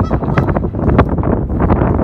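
Wind buffeting the microphone, loud and gusty, with a short sharp knock about halfway through.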